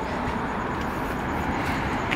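Steady outdoor city background noise: a low rumble with a hiss over it, distant traffic and street ambience, with no single distinct event.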